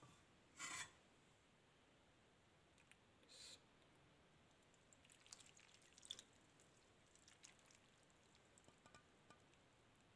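Mostly near silence, with faint sounds of mustard oil being poured from a metal pan onto spice-coated carrot and lemon pieces: two brief soft noises in the first few seconds, then scattered faint ticks and crackles.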